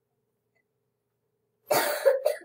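Near silence, then near the end a person coughs once: a sudden, loud, noisy burst.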